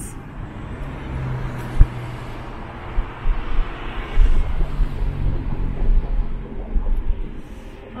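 Inside a moving car: steady engine hum and road noise, with a sharp click about two seconds in and irregular low thumps in the middle of the stretch.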